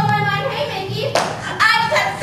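Young female voices, then a burst of hand clapping about a second in, followed by a short vocal sound.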